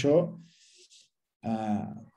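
A man speaking over a video call: one word, about a second's pause, then a drawn-out voiced sound as he carries on.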